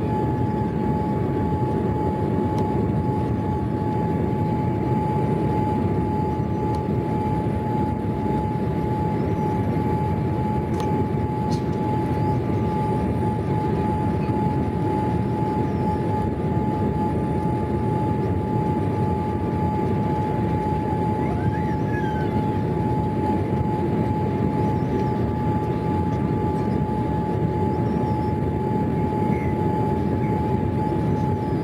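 Steady cabin noise inside a Boeing 787 Dreamliner on approach: a deep, even rush of engine and airflow, with a steady high hum running through it.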